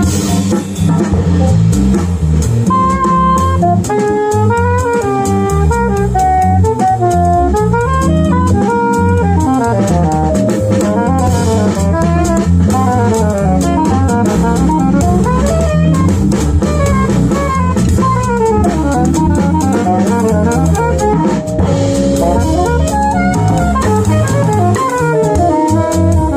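Live jazz combo: an alto saxophone plays a quick-moving solo line with runs up and down, over electric bass guitar and a drum kit with steady cymbal strokes.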